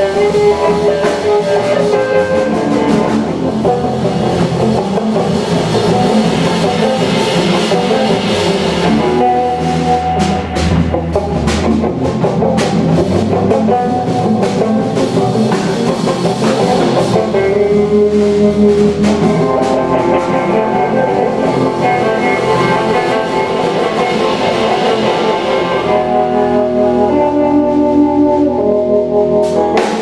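A live jazz trio playing: electric guitar leading with held, sustained notes over electric bass and drum kit, with a run of cymbal strokes in the middle.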